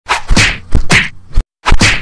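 Edited intro sound effect: a quick run of loud, sharp whacks, a brief break, then one more whack near the end.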